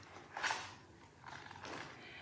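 A page of a large hardcover picture book being turned: soft swishes of stiff paper, one about half a second in and a longer rustle after a second.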